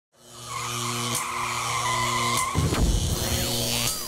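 Produced race-car sound effect: a steady engine note fades in from silence, then about halfway through gives way to a louder burst of engine noise with tyre squeal.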